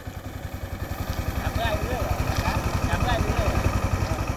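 Longtail boat's Briggs & Stratton I/C 13.5 single-cylinder engine running under way with a rapid, even low firing beat, growing louder over the first two seconds or so.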